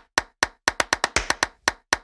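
A percussive transition sound effect: a quick, uneven run of sharp clap-like hits, about six a second.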